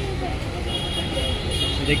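Background chatter of a crowd of shoppers over a steady low hum, with no one voice standing out.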